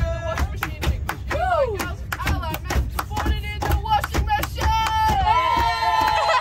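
A group of young women clapping in a quick steady rhythm, about four claps a second, while chanting and singing a cheer, ending on a long held sung note. A low rumble from the bus runs underneath.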